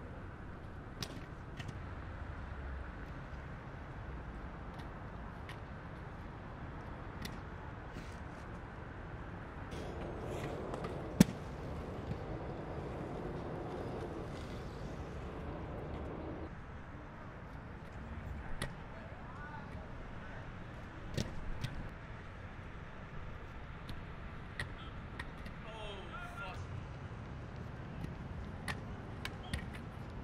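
Steady city street noise with scattered sharp clacks of inline skates striking granite ledges, one much louder hit about eleven seconds in. Indistinct voices for several seconds around the middle.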